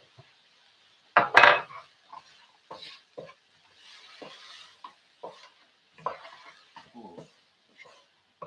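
Wooden spatula stirring spices and chopped chillies in a frying pan, scraping and knocking against the pan about every half second, with one loud scrape about a second in. A soft sizzle from the pan comes up briefly near the middle.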